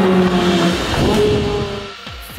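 Ferrari 458's 4.5-litre V8 engine as the car passes and draws away. The engine note drops slightly in pitch and fades over the two seconds.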